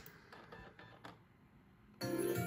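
Near silence: room tone, with a few very faint soft sounds in the first second.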